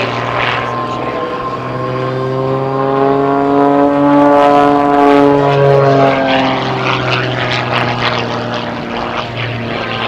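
Extra 300 aerobatic plane's six-cylinder Lycoming engine and propeller running hard overhead. The pitch rises and then falls over several seconds in the middle as the plane comes down and pulls through.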